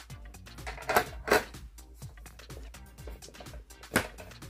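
White plastic drawer organizer being opened and handled: two sharp plastic clacks about a second in, and another near the end.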